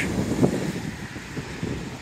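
Road traffic going by: the tyre and engine noise of passing vehicles, fading over the two seconds.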